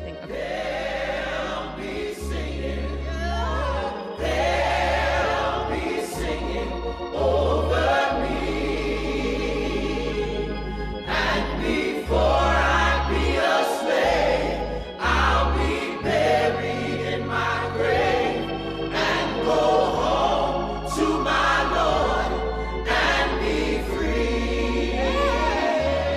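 Choral music: voices singing over deep held bass notes that change every second or two.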